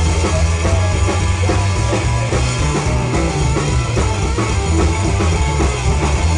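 Live rhythm-and-blues band playing a blues number: drum kit, bass guitar and electric guitar keeping a steady, dense groove.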